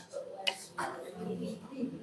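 Low murmur of voices from a small group, with a single sharp click about half a second in.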